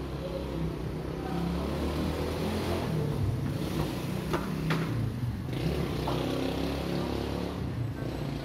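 A motor vehicle's engine passing close by, growing louder over the first few seconds, holding, then easing off near the end. A few sharp knocks sound in the middle.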